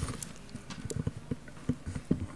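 Handling noise at a panel table: a run of short, soft low knocks and bumps, about a dozen, as objects are moved on the table near the microphones.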